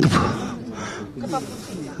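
A man's voice trails off, then a soft, drawn-out breathy hiss of exhaled breath comes through a handheld microphone held close to his mouth.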